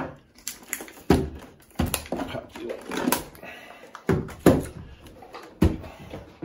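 Hard plastic knocks and clunks as the battery door and battery pack are taken out of an APC Back-UPS XS 1000 and set down on a table, about seven separate knocks spread over a few seconds.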